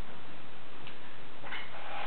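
Steady background hiss, with a faint click about a second in and soft rustling near the end as a person settles into a chair.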